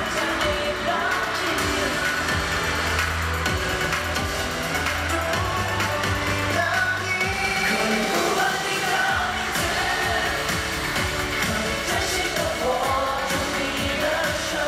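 K-pop song with singing over a steady bass line, played loud on stage.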